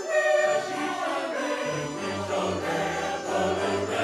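A church choir of men and women singing together in harmony, loudest just at the start.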